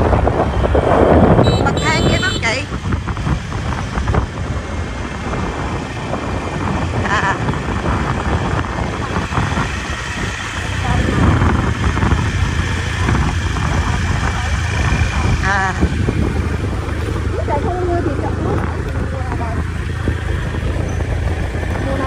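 Motorbike riding along a road: steady engine hum and road noise mixed with wind on the microphone.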